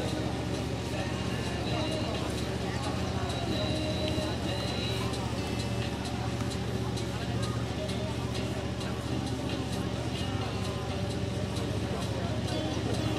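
Indistinct, distant murmur of voices over a steady low hum.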